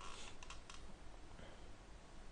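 A few faint, sharp clicks at a computer in the first second, over a low steady background hum.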